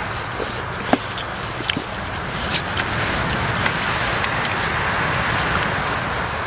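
Sea waves breaking on a sandy shore close by: a steady wash of surf that swells about halfway through. Light clicks of chopsticks and tableware come through on top.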